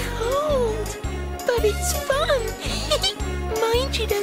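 Playful children's TV background music: a steady bouncy bass beat of about two pulses a second, with short gliding, whistle-like notes sliding up and down over it.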